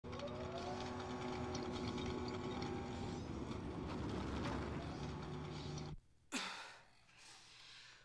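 A steady, dense background drone with several held tones, rising briefly at the start, cuts off abruptly about six seconds in. Moments later a woman's short, strained breath is heard as she exerts herself.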